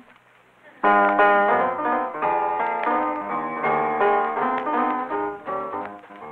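Piano-led instrumental introduction to a jazz-blues song. It starts suddenly about a second in and runs as a string of chords and notes. The sound is the narrow, dull-topped sound of an old radio transcription.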